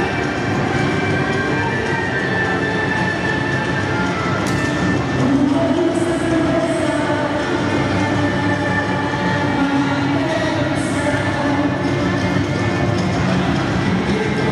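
Music accompanying a couple's folk dance, echoing in a large sports hall over a steady background din.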